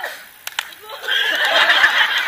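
A group of people shouting and shrieking all at once, breaking out about a second in, loud and overlapping. Two sharp clicks come just before.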